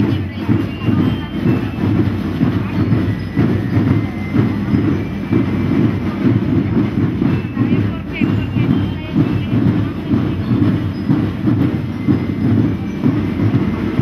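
Parade drums beating a fast, steady rhythm, loud and continuous.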